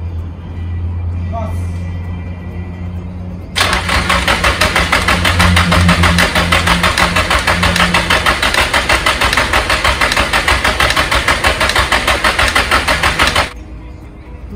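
Nissan SR-series engine being cranked on the starter for about ten seconds with a rhythmic, even chug, not firing, and the cranking stops suddenly near the end. The engine won't catch; the owner suspects it is getting no spark. A steady low hum comes before the cranking.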